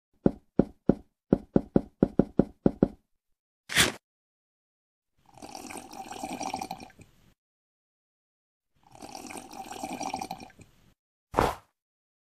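Sound effects for a stop-motion animation: about ten quick footstep taps, a short burst of noise, then two slurping sips of about two seconds each from a mug, ending with another short burst of noise.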